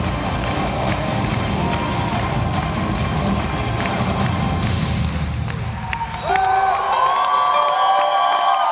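Live heavy metal band playing loudly, the heavy bass and drums dropping out about six seconds in. A crowd cheers and whoops over it, its rising and falling shouts and whistles carrying clearly after the band drops away.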